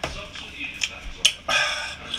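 A few short, sharp clicks over faint, breathy voice sounds from a person, with no clear words.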